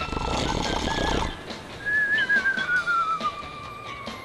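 Cartoon soundtrack effect: a wavering whistle gliding slowly down in pitch for about two seconds, over music. It comes after a rushing noise with a low rumble in the first second or so.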